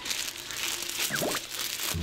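Rustling and crinkling of paper or plastic being handled during tidying, a run of small scratchy crackles, with a short gliding whistle-like tone about a second in.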